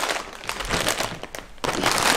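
Plastic instant-noodle packet crinkling as it is handled, with irregular crackles and a louder rustle near the end.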